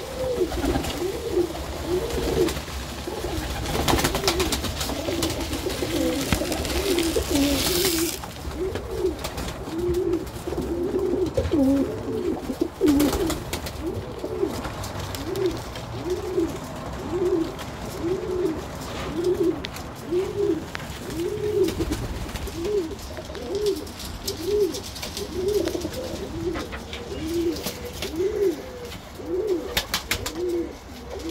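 Domestic pigeons (Birmingham Rollers) cooing in a loft, a steady run of coos, each rising and falling in pitch, about one a second. For roughly the first eight seconds a rustling patter runs underneath as seed is poured out and birds flap down to it.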